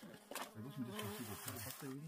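A flying insect buzzing close to the microphone, its pitch wavering up and down.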